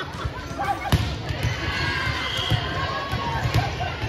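One sharp smack of a volleyball being struck about a second in, then voices and chatter from players and onlookers in a large gym hall.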